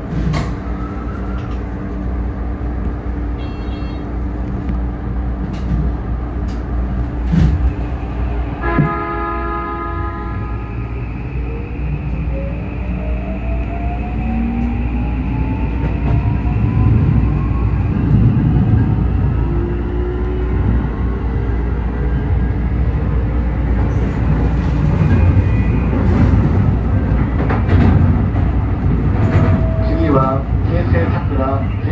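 Electric commuter train running, with a steady rumble of wheels on rail. About nine seconds in, a horn gives a short blast. After it, the traction motors' whine rises in pitch for several seconds as the train accelerates.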